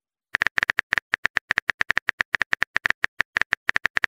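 Phone keyboard typing sound effect: rapid, even key clicks, about nine a second, starting a moment in, as a message is typed.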